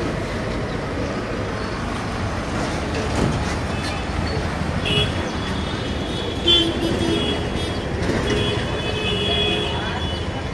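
Busy street traffic with vehicle horns honking: short blasts about halfway through and a longer blast near the end, over a steady rumble of engines.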